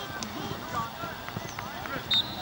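Scattered, faint shouts and chatter from lacrosse players and spectators on the field, with a few light knocks.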